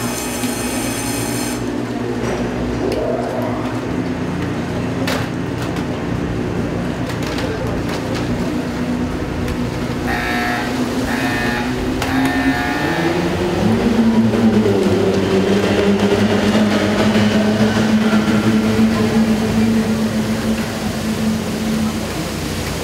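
Boat-race two-stroke outboard motors running in the pit, a steady engine drone whose pitch shifts and settles about two-thirds of the way in, after which it is louder.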